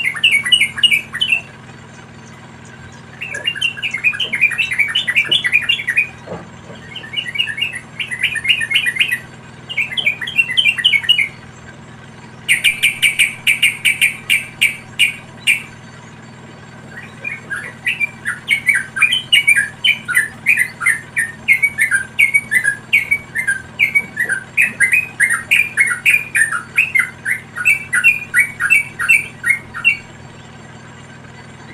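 Yellow-vented bulbuls chirping at a nest of chicks. The calls are quick runs of short, sharp chirps in bouts of a few seconds. The loudest and fastest bout comes about halfway through, and a long unbroken run of chirps fills the last third.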